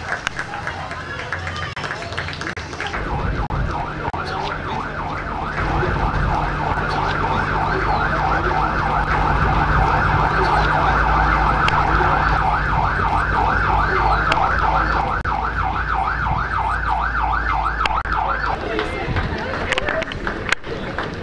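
Vehicle siren sounding a fast yelp, its pitch rising and falling about four times a second, with a steady low engine rumble beneath. It swells up a few seconds in and fades near the end.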